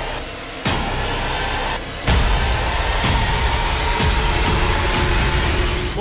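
Dense, rumbling cinematic soundscape from series footage: a wash of noise over a deep low rumble. It steps up in level about two seconds in, with a faint held tone underneath.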